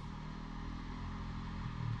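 Steady low background hum of a running motor, with no distinct events.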